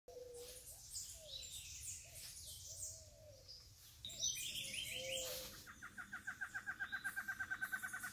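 Several birds calling: low, curving calls repeat over high chirps, and about halfway through a fast, evenly repeated call takes over and grows louder.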